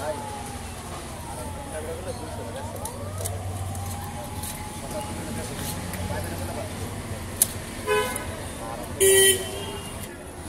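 Busy street ambience with background voices and traffic. A vehicle horn toots briefly about eight seconds in, and again, louder, just after nine seconds.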